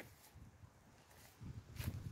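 Faint rustling and low thumps from a handheld camera being moved through garden plants. There is a sharp click at the start and a louder one near the end.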